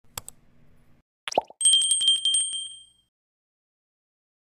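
Subscribe-button animation sound effects: a mouse click, a short downward-gliding pop about a second and a half in, then a bright notification bell trilling rapidly for over a second and fading out.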